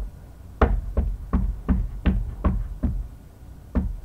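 A wood-mounted rubber stamp tapped down repeatedly onto an ink pad to ink it, giving a row of loud knocks at a steady pace, with one more after a short pause near the end. The knocks sound loud because they are close to the microphone.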